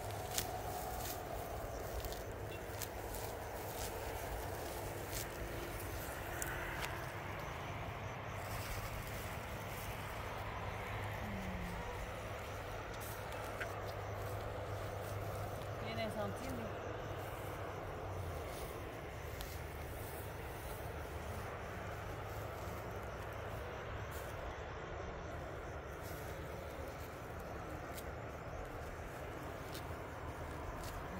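Two women talking quietly outdoors over a steady low hum, with a few faint light clicks and rustles.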